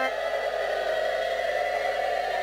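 Harmonium holding a steady, sustained drone.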